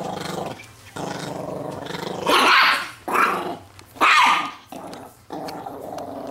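A Chihuahua growls protectively over a T-bone steak bone, a low, rattling growl. Between about two and four and a half seconds in it breaks into three loud snarling outbursts, then settles back into growling near the end.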